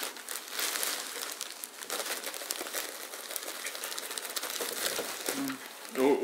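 A plastic bag crinkling as loose shredded bedding is shaken out of it into a plastic case, a continuous dense rustle of fine crackles.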